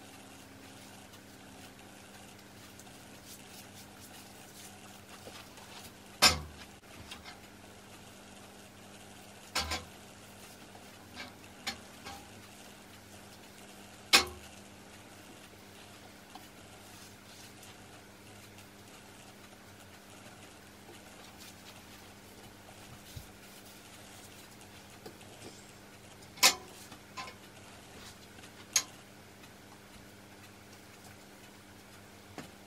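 A paintbrush knocking against the rim of a metal paint tin: about ten sharp clinks with a short metallic ring, irregularly spaced, over a faint steady hum.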